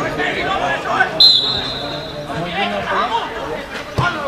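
Spectators' voices chattering, cut through just over a second in by one loud, steady blast of a referee's whistle lasting about a second.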